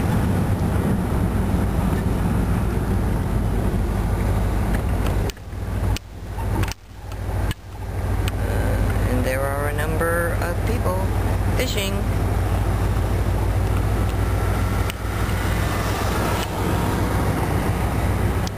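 Steady low road and engine rumble of a slowly moving car, heard from inside the cabin, briefly dropping away several times about five to eight seconds in.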